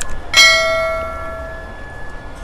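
A single bell chime, struck once about a third of a second in and ringing down over about a second and a half, after a brief click at the start.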